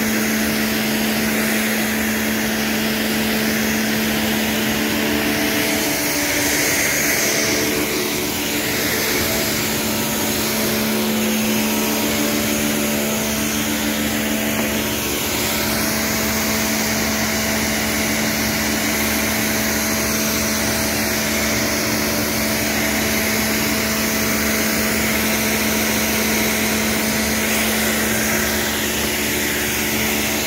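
Pressure washer running steadily: the pump motor hums under the hiss of the water jet striking floor tiles.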